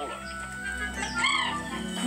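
A cartoon bird's calls, with a clear rising-and-falling cry about halfway through, over steady background music, heard through a television speaker.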